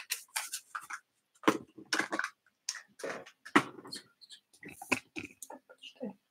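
Quiet, irregular rustles and light taps from a cardboard toy box being handled and moved.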